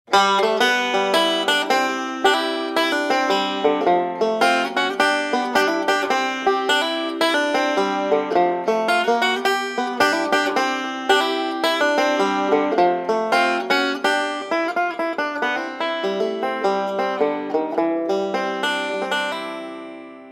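Banjo picking a fast, steady run of plucked notes, the melody ringing out and fading away near the end.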